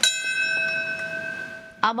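Fire department ceremonial bell struck once, its ring of several steady tones fading slowly; it is tolled to mark a moment of silence.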